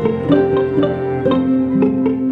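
Instrumental passage of acoustic guitar and cello: plucked notes about twice a second over held, sustained tones.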